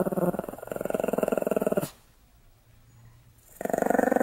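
Pomeranian grumbling in a long, pulsing growl-like voice that stops about two seconds in, then a second grumble starting shortly before the end.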